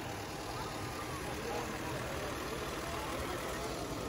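Vintage Ford engine idling steadily, just started.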